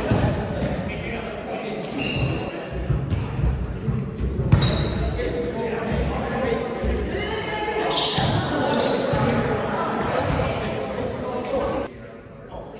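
Indistinct voices of volleyball players and onlookers echoing in a large gym, with ball strikes. The loudest is a sharp smack about four and a half seconds in.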